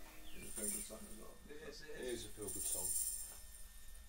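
Faint, indistinct talk between people in the recording room after the last chord of an acoustic song has died away.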